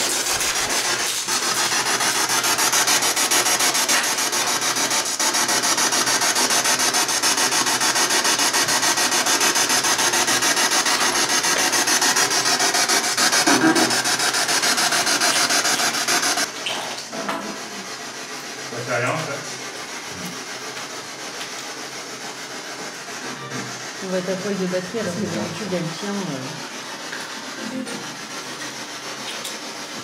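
A ghost-hunting noise device, 'the machine', playing loud, harsh, wavering static that hurts the ears. About halfway through it drops suddenly to a quieter hiss.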